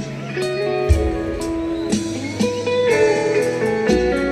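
Live rock band playing an instrumental passage: electric guitar playing sustained melody notes over bass guitar and drums, with low drum thumps about once a second, heard from the audience on a phone.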